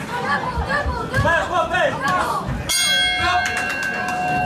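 Ringside bell struck near the end, signalling the end of the round; its ringing tone, with several clear overtones, carries on past the strike. Before it, shouting from the crowd and corners.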